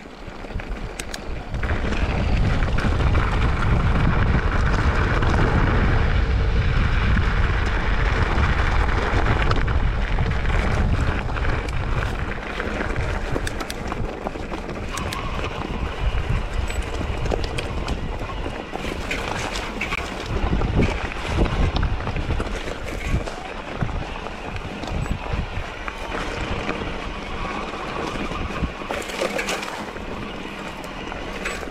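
Mountain bike rolling fast down a loose, rocky trail: wind rumbling on the microphone together with tyre noise on gravel and stones, and frequent clatters and knocks as the bike hits rocks. The wind rumble is heaviest in the first half; the knocks grow more frequent later.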